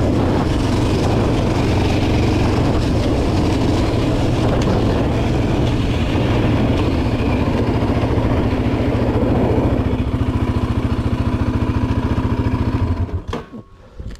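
Yamaha Raptor 700R ATV's single-cylinder four-stroke engine running as the quad rides a dirt trail. It settles into an even, pulsing idle about ten seconds in and is switched off near the end.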